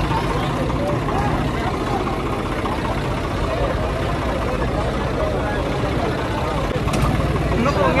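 Swaraj 855 FE tractor's three-cylinder diesel idling steadily under the chatter of a large crowd of men.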